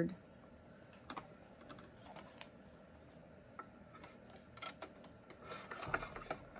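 Faint, scattered light clicks and paper rustles as a thin metal die and a sheet of cardstock paper are pressed and positioned by hand on the plastic cutting plate of a small die-cutting machine.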